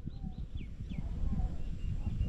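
Small birds chirping: a run of short notes, each falling in pitch, several in quick succession. Beneath them is a steady, irregular low rumbling on the microphone.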